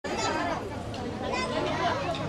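Chatter of a group of children and adults talking at once, with several voices overlapping steadily.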